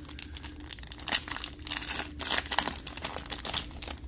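Foil wrapper of a Panini Prizm football card pack crinkling and tearing as the pack is ripped open, a dense run of crackles lasting about three seconds.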